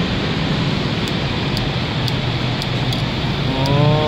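Steady street traffic noise, a continuous low rumble of passing vehicles. A person's voice starts near the end.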